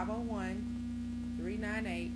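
Steady electrical mains hum, a constant low tone on the recording, under a woman's narrating voice that speaks briefly at the start and again near the end.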